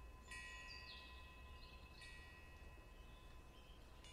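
Near silence, with a faint chime-like ringing struck twice, about a third of a second in and again at two seconds, each ring fading slowly.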